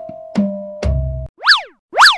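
A short musical jingle of held tones and struck notes ends on a low bass note. Then come two cartoon 'boing' sound effects about half a second apart, each a quick sweep up and back down in pitch.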